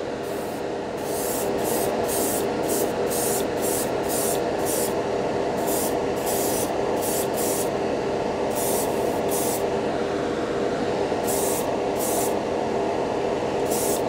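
Gravity-feed airbrush spraying metallic lacquer in short bursts, about two a second, with a pause about ten seconds in, over a steady background hum.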